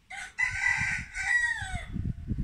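A rooster crowing once: a short opening note, then a long call that falls in pitch near the end.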